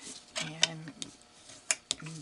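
A few sharp clicks and taps, the loudest two close together near the end, as hands handle folded paper and pick up a plastic bone folder on a cutting mat.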